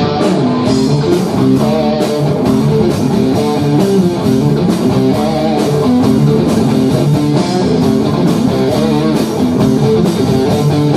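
Live rock band playing at full volume, led by guitar over a steady beat.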